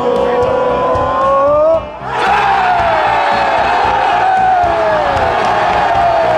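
Stadium crowd of football supporters singing a chant, then about two seconds in erupting into loud cheering and yelling, many voices shouting and falling in pitch.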